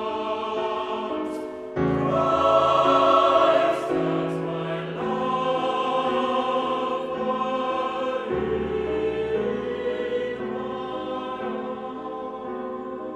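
A chamber choir singing held choral chords. About two seconds in it grows louder as deeper voices join, and about eight seconds in the bass moves to a lower note.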